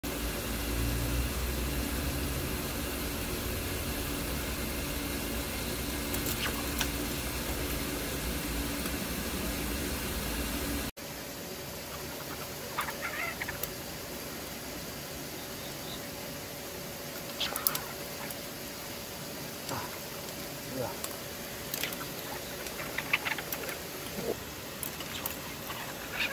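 A steady low hum for about the first ten seconds. Then, after a cut, a quieter stretch in which a thin steady whine runs: a fishing line drawn taut as piano wire by a hooked carp. Scattered sharp clicks and squeaks sound over it.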